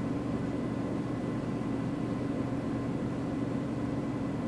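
Steady low hum of a ventilation fan, with a few faint steady tones above it and no change in level.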